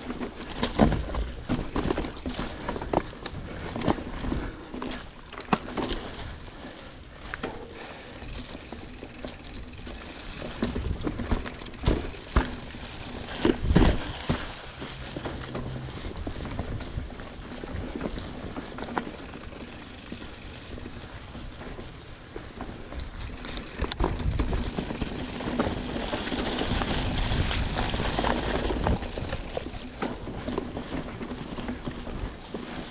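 Giant Trance 29 full-suspension mountain bike ridden over rocky, leaf-covered singletrack: tyres rolling through dry leaves with frequent knocks and rattles from the bike hitting rocks and roots. A louder, steadier rush of rolling noise sets in near the end.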